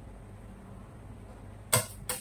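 A single short, sharp knock near the end as the metal palette knife and cake turntable are handled, over a low steady hum.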